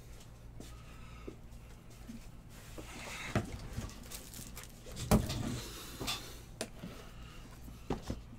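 Handling noises on a table as card supplies and a box are moved about: several knocks and rustles, the loudest a sharp knock about five seconds in, over a steady low hum.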